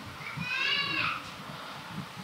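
A single short, high-pitched animal call in the background, lasting under a second and rising slightly before falling away.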